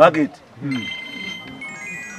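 A mobile phone ringtone: high electronic notes held steady and stepping to new pitches, starting about half a second in.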